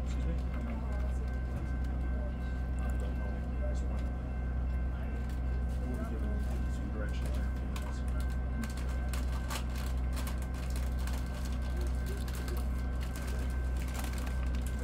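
Diesel locomotive engine idling with a steady low hum, with faint voices of people talking in the background.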